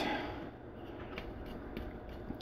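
A few faint light clicks and taps of hands handling a small 3D-printed plastic board holder, over quiet room tone.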